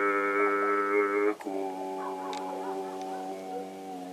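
A steady low drone held on one pitch, rich in overtones; about a second and a half in it breaks off briefly and comes back softer and duller.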